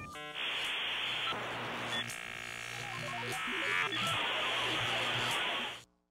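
Electronic glitch sound effects for an animated logo: bursts of buzzing static and a run of falling bleeps, stopping abruptly just before the end.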